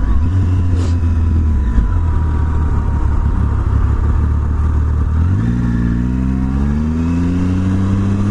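Motorcycle engine heard from the rider's point of view, running steadily at low revs, then rising in pitch as the bike accelerates from about five seconds in.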